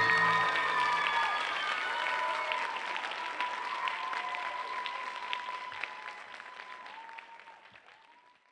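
Audience applauding after a ballet performance's final chord, with voices cheering over the clapping. The applause fades out near the end.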